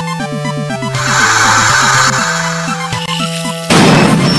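Bouncy background music with short plucked notes, overlaid by a swelling whoosh effect that lasts about two seconds starting a second in, and a louder, noisy swish that hits just before the end.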